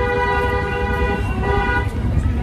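A vehicle horn sounding in one long, steady blast, two close tones together, that stops shortly before the end, over a low, constant rumble of traffic.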